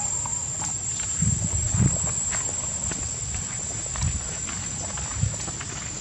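Steady high-pitched drone of insects, with a few dull low thumps, two of them close together a little over a second in.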